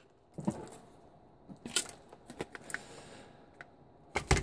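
Light clicks and knocks of red 18650 lithium-ion cells, pulled from a laptop battery pack, being picked up and handled on a workbench: one about half a second in, a quick cluster in the middle, and a faint one near the end.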